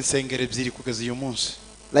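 A man speaking into a handheld microphone, with a short pause near the end.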